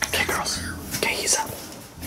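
Whispered speech: a person whispering in short, breathy phrases.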